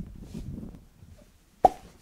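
A single short pop with a brief ringing tone about a second and a half in, over a faint low rumble.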